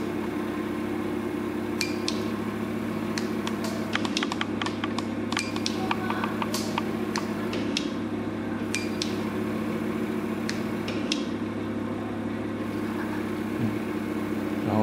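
Microneedle fractional RF handpiece running: a steady low machine hum with a string of sharp, irregular clicks as the stepper motor drives the needles in and out, the clicks thickest a few seconds in.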